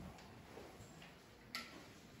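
Near silence: room tone, with a few faint ticks and one sharper click about one and a half seconds in.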